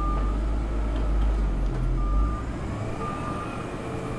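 Heavy machinery running with a low rumble while a reversing alarm beeps at about one short beep a second. The deepest part of the rumble drops away about two and a half seconds in.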